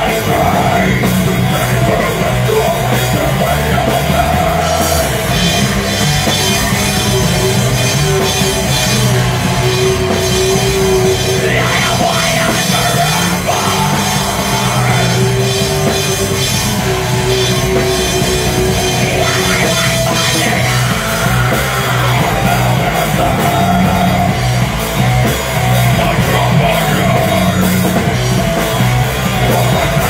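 Live rock band playing a heavy, loud song: electric guitars and drums through stage amplifiers, continuous with sustained held notes.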